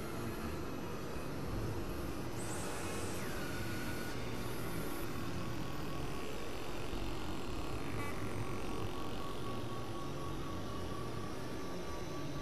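Dense, steady experimental noise-drone made of several music tracks layered over one another. A high tone glides down about three seconds in, and from about eight seconds a rising sweep and a steady high tone sit on top of the wash.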